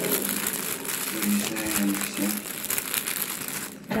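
Plastic packaging and bubble wrap crinkling continuously as hands handle items in a box of school supplies.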